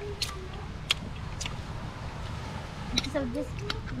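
A man smacking his lips and tongue while tasting food, a few sharp wet clicks spread through the first seconds, over a low rumble of wind on the microphone. A man's voice comes in near the end.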